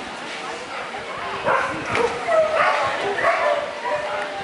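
A dog barking in a few short yips about halfway through, over people's voices.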